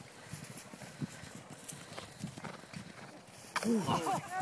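Horse's hooves beating irregularly on the ground as a hunt horse and rider go past, with a loud call with a bending pitch near the end.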